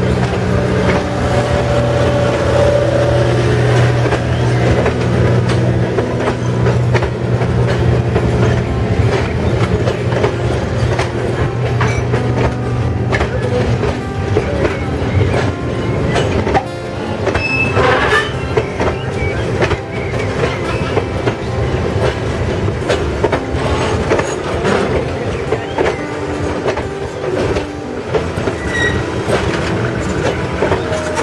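Railroad passenger coaches rolling past, their steel wheels clacking over rail joints and the grade crossing, with a brief wheel squeal a little past halfway. A low steady hum under the clacking in the first half fades out around the middle.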